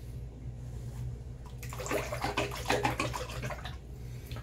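Water from a bathroom sink tap running and splashing into the basin, starting about a second and a half in and stopping just before the end, over a steady low hum.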